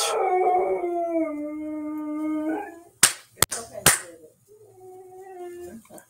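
A man's voice stretches a word into one long held, sung tone, howl-like and steady in pitch, lasting almost three seconds. A few sharp clicks follow, then a shorter, quieter held vocal tone near the end.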